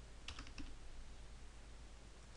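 Computer keyboard keys being typed: a short run of quick, faint keystrokes about a quarter to half a second in, then only faint room noise.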